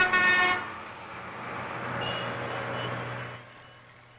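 A vehicle horn honks once at the start over city road traffic, then the steady noise of passing engines and tyres, fading out near the end.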